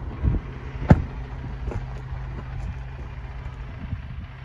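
Ford Transit Custom 2.0 TDCi four-cylinder turbodiesel idling steadily. A single sharp knock comes about a second in.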